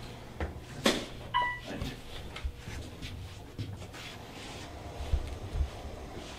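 Footsteps and sharp knocks inside an OTIS hydraulic elevator cab as someone steps over the door sill, the loudest knock just under a second in. About a second and a half in there is one short electronic beep.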